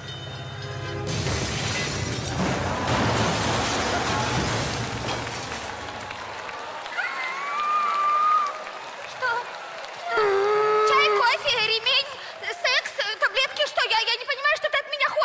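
Sound effect of a train rushing past and crashing into something, building from about a second in and fading out by about six seconds. It is followed by drawn-out, gliding vocal cries and short vocal outbursts.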